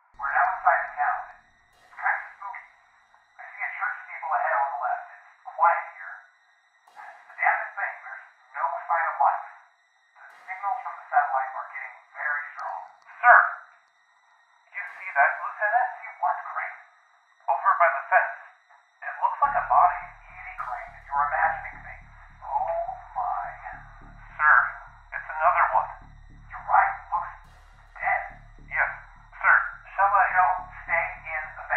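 Voice chatter heard over a two-way radio: thin and band-limited like a walkie-talkie transmission, with no clear words. About twenty seconds in, a low pulsing rumble starts underneath it.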